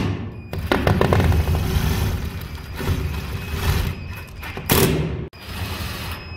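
Cordless drill-driver driving self-tapping screws through a ceiling diffuser's frame. The motor runs in long bursts, with a brief stop about five seconds in before it starts again.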